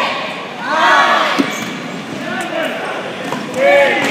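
Players' shouts echoing in a gymnasium during a dodgeball game. A single sharp smack of a rubber dodgeball hitting about a second and a half in.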